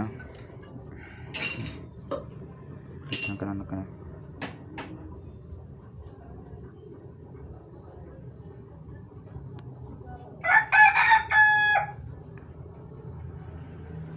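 A rooster crowing once, about ten and a half seconds in, in a loud call of a second and a half broken into stepped segments. Before it there are a few faint knocks.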